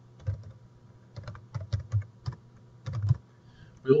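Computer keyboard being typed on: about a dozen separate keystrokes at an uneven pace, in short runs with brief pauses between them.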